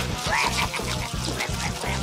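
A costumed pig monster's eating vocal noises: a few short rising squeals and grunts as it gobbles food. They play over background music with a steady low bass line.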